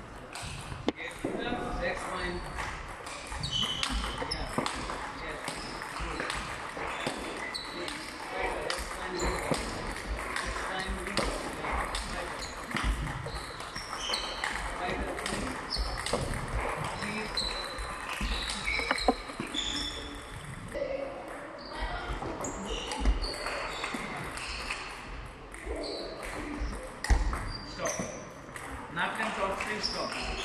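Table tennis multiball drill: a rapid, irregular run of sharp clicks from the plastic ball striking rackets and table, with short high squeaks from sports shoes on the hall floor as the player moves.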